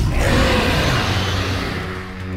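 Trailer sound design: a loud rushing noise effect that thins out toward the end, over low sustained music.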